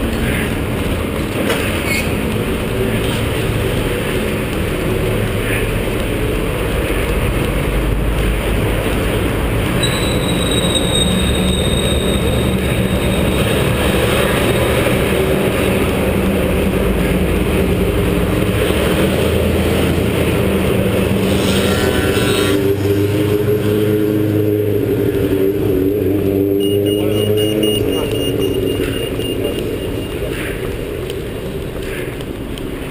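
City street traffic and a steady low rumble of wind and jostling on a chest-mounted action camera while jogging. Near the end a vehicle engine's pitch wavers up and down as it passes.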